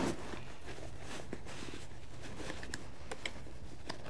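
Faint handling sounds of nylon webbing straps and a plastic buckle being worked by hand, a few light clicks and rustles over a low steady room hum.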